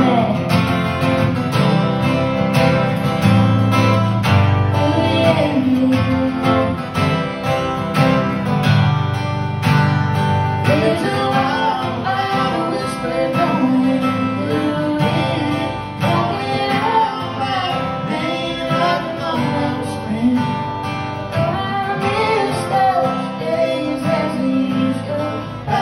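Acoustic guitars strummed and picked in a live song, amplified through a PA.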